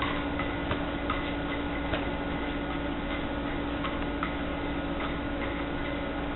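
A steady mechanical hum holding one tone, with irregular light clicks or ticks over it.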